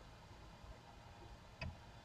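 Near silence, room tone, with one short faint click about three quarters of the way through.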